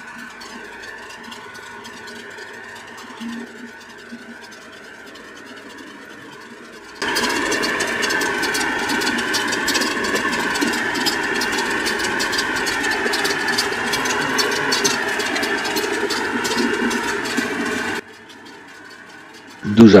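Electric motors running on the motor-and-flywheel generator rig, first a steady hum with several fixed tones. About seven seconds in, a much louder motor whine starts abruptly, wavering slightly in pitch, and cuts off just as suddenly near the end.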